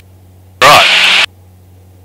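A single spoken word over a light aircraft's intercom. Before and after it the audio cuts abruptly down to a faint, steady low hum.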